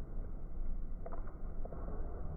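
Low rumbling room noise, with a brief knock about a second in and a fainter one shortly after.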